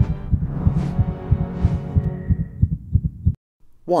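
Cinematic intro sound design: a low droning hum under a fast, even throbbing pulse like a heartbeat, with two swelling whooshes in the first two seconds. It cuts off suddenly a little past three seconds in.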